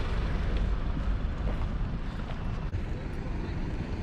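Outdoor street ambience: a steady low rumble of traffic on the road alongside.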